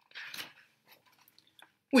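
Paper rustle of a paperback picture book's page being turned by hand: a short crinkling swish just after the start, then a few faint ticks of paper being handled. A man says "Oui" at the very end.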